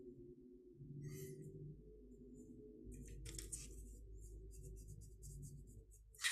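Near silence: a faint steady hum, with a few soft brushing sounds about a second in and again a little past the middle as a paintbrush works paint onto paper.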